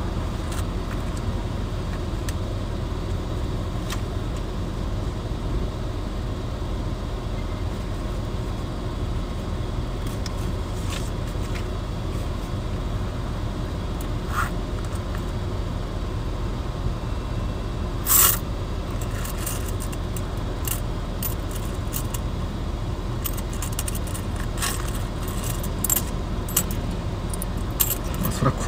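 Steady low rumble of a car idling, heard from inside the cabin. Scattered light clicks run through it, with one brief metallic jingle about two-thirds of the way through.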